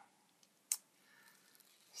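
Quiet room tone broken by a single sharp click about two-thirds of a second in, with a fainter tick just before it.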